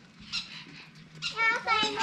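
Young children talking, their voices growing louder in the last part, with a short high call about a third of a second in.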